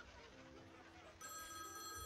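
Telephone bell ringing, starting suddenly a little over a second in, after a quiet stretch with faint audience noise.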